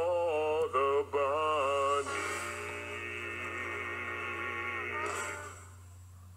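A male voice sings a few short bending notes over music, then holds one long final note that fades away about five seconds in. A steady low hum runs underneath.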